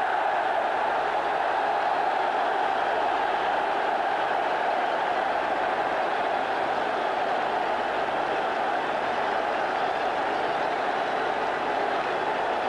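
Stadium crowd cheering a goal, a steady, even roar.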